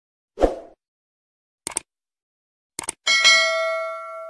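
Subscribe-button animation sound effects: a short soft hit, then two quick mouse-click sounds about a second apart, then a bright bell ding about three seconds in, the notification-bell chime, that rings on and slowly fades.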